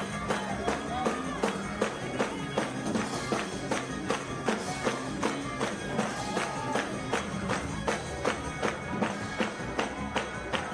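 Gospel praise-break music: drums and tambourine keeping a fast steady beat, about four strikes a second, with voices singing and shouting over it.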